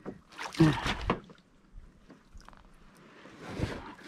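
Splashing and knocks as a small fish is swung out of the water on the line and brought aboard a plastic kayak. The loudest burst comes about half a second in, and a swelling rustle with a low thump comes near the end.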